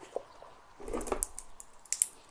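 Handling noise from a steel watch in clear protective plastic being picked up in the hands: a soft rustle of the plastic film about a second in, with a few small clicks and a sharper click near the end.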